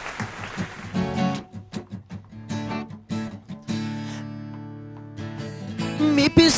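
Two acoustic guitars playing a strummed chord intro: short, choppy chord strokes, then one chord left ringing and fading for about a second and a half near the middle, then more strokes.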